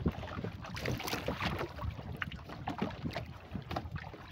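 Choppy water lapping and slapping irregularly against the hull of a wooden canoe, with wind rumbling on the microphone.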